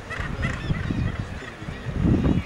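Seabird colony calling: many birds giving short, overlapping calls at once, over a low rumble.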